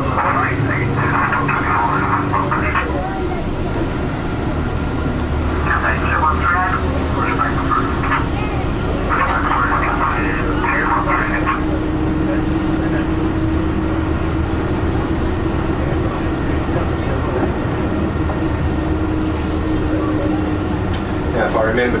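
Steady low drone of a tour bus's engine heard from inside the cabin, with a faint steady tone running under it. Bursts of indistinct talk come and go over it.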